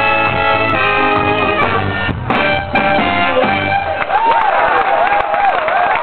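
Live ska band with trumpet, trombone and saxophone playing and holding the closing chords of a song, which stop a little under four seconds in. The audience then cheers and whoops.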